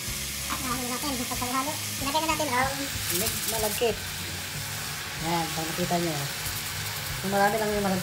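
Chicken pieces frying in a pot with chopped ginger and garlic, a steady sizzle, with a song with a singing voice playing in the background.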